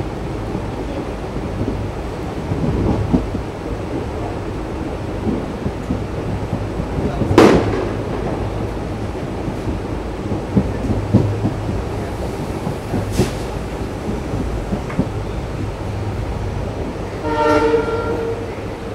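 Diesel-hauled passenger train running along the track, heard from a coach: a steady rumble with wheels clicking over rail joints and a sharp loud crack about halfway through. Near the end there is a short horn blast from the locomotive.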